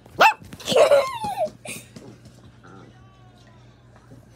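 A puppy barking: three short, high yaps in quick succession in the first two seconds, one sliding down in pitch, followed by a faint falling whine.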